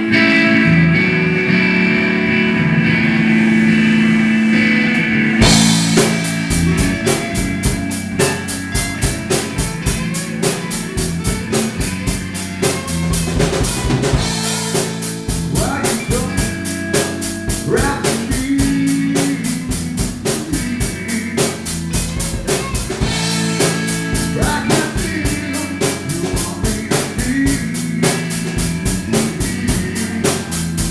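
Live rock band playing: electric guitars ring out alone at first, then the drum kit comes in about five seconds in with a steady beat under the guitars and bass.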